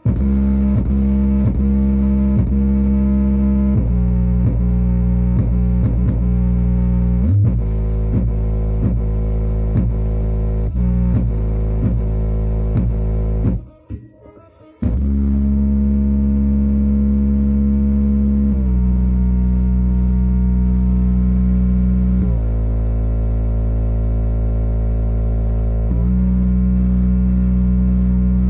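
Bass-heavy music played loud through a JBL portable speaker, its passive radiator pumping to deep, sustained bass notes that change pitch every few seconds. The music cuts out for about a second midway.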